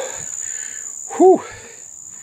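A man breathing out hard, then letting out one short pained 'ooh' that rises and falls about a second in, from the burn of a Trinidad Scorpion chili he has just eaten. A steady high-pitched tone runs underneath.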